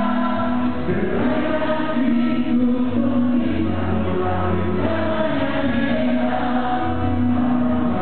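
A live rock band playing a song, built on long held chords over a steady low bass line.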